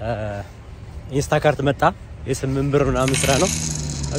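A man talking over a low steady background hum, with a brief high, coin-like jingle near the end.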